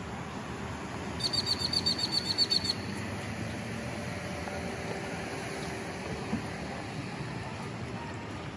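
A bird giving a rapid series of about a dozen high, evenly spaced chirps lasting about a second and a half, over a steady background of outdoor noise.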